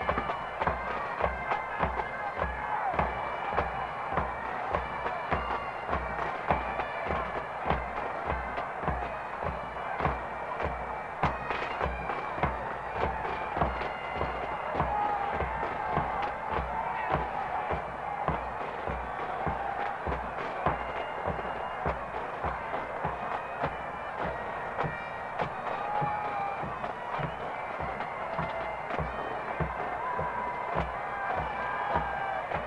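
A Scottish pipe band playing on the march: massed Great Highland bagpipes carry a tune over their steady drone, and drums keep an even marching beat of about two strokes a second.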